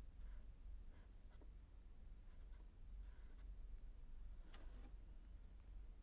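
Faint scratching strokes of a felt-tip marker writing on paper, over a low steady hum.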